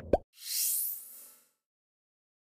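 Animated end-card sound effect: a brief pitched, plopping blip, then an airy, high shimmering whoosh that swells and fades away within about a second.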